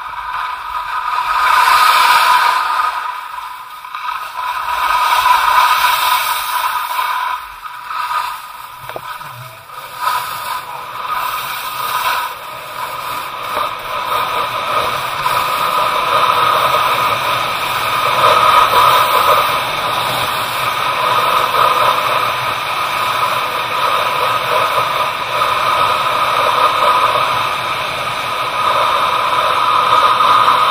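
Skis sliding and scraping over groomed artificial snow on an indoor slope, a continuous rasping hiss. It swells and dips over the first ten seconds, then runs more evenly.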